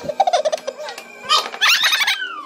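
A few clicks from the crank of a Pie Face game, then about a second and a half in a loud burst of high shrieks and squeals that slide downward in pitch, as the cream-loaded arm springs at the player's face.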